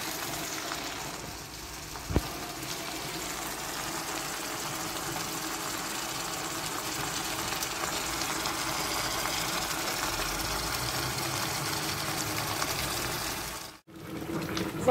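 Chopped vegetables cooking in an enamel pot on the stove, giving a steady hiss, with one short knock about two seconds in; the sound cuts off suddenly just before the end.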